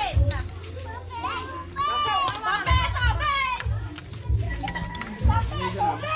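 Children's high-pitched voices calling and shouting, loudest in the middle, over background music with a repeating bass line.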